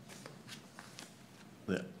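Faint rustling and light clicks of a sheet of paper being handled near a microphone, and a man's voice starting near the end.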